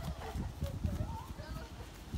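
Quick, irregular thuds of feet striking grass as two people do fast butt kicks in place.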